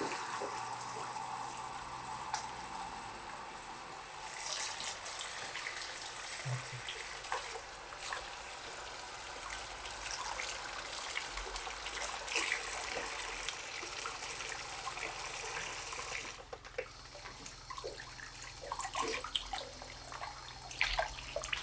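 Barber-shop sink tap running, the stream splashing over a client's head into the wash basin as his hair is rinsed. The steady rush turns patchier in the last few seconds.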